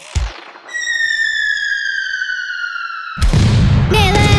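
Cartoon falling-bomb whistle: one tone gliding slowly downward for about two and a half seconds, then a loud explosion bursts in about three seconds in. A short low thump comes right at the start.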